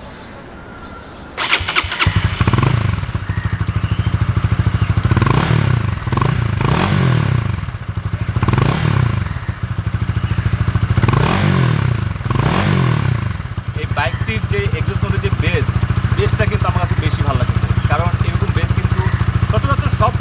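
Honda CBR150R's 149 cc single-cylinder engine electric-started about a second and a half in, then revved in six short throttle blips before settling to a steady idle. This is the stock exhaust note that the rider counts among the bike's weak points.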